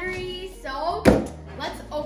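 A single sharp thump about a second in, a hand striking the side of a large cardboard box, among children's voices.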